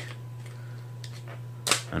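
Hands handling a rugged plastic phone case packed as a survival kit, with one sharp click near the end, over a steady low hum.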